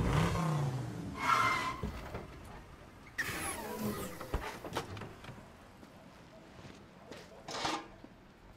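A car engine revving and falling away as the car pulls up, then a sudden crash about three seconds in as a metal trash can is knocked over, its lid clattering on the pavement. A short burst near the end fits the car door opening.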